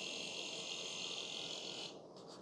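DYMO LetraTag 100H handheld label maker printing a label, its tape-feed motor giving a steady high-pitched whir that stops abruptly just before the end as the print finishes.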